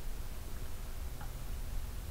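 A pause in the voice-over: a steady low hum and faint hiss of the recording's background noise, with a faint tick about a second in.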